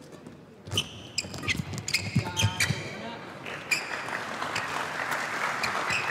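Badminton rally: a quick series of sharp racket strikes on the feather shuttlecock, with court shoes squeaking on the hall floor. In the second half, a steady rush of applause from the crowd builds as the point ends.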